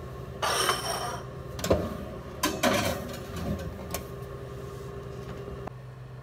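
A brief rush of noise, then several sharp clinks and knocks of a metal pan being set onto a wire oven rack, over a steady low hum.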